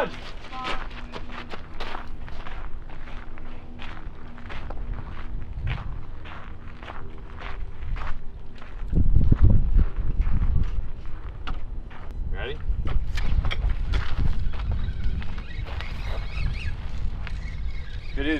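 Footsteps and handling knocks on a concrete walkway, a string of short irregular clicks over a faint steady low hum, with a loud low rumble about nine seconds in.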